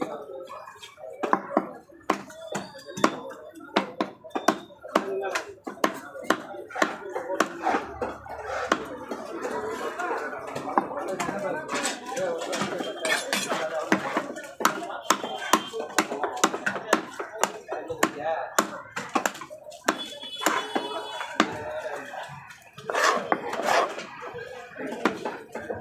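A large knife chopping and cutting fish on a wooden log chopping block: a run of sharp knocks as the blade strikes the wood, thickest in the first few seconds and again near the end.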